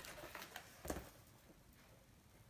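Faint taps and light brushing sounds, with a soft knock about a second in: a liner brush being flicked upward on watercolour paper to paint grass.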